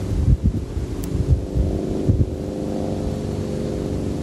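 Wind buffeting the microphone in a few low, irregular gusts, over a steady low hum of several held tones.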